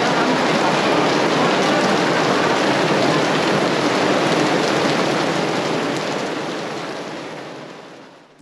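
Steady heavy rain falling on wet stone paving, a dense even hiss that fades out over the last two seconds or so.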